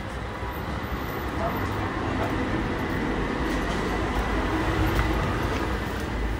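Street ambience: a steady low rumble of traffic with indistinct voices.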